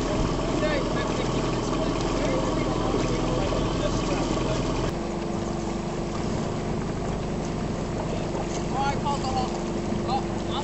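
Outboard motor of a small boat running steadily on the water, its hum shifting to a steadier single note about halfway through. Voices call faintly near the end.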